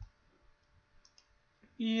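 Computer keyboard or mouse clicking: one sharp click at the start, then a few faint ticks, with a man's voice starting near the end.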